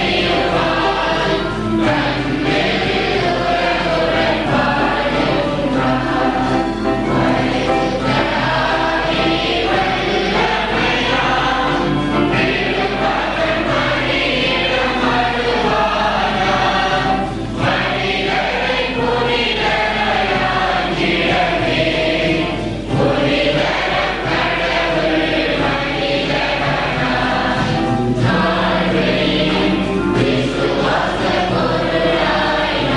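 A choir singing a hymn, the voices continuous throughout.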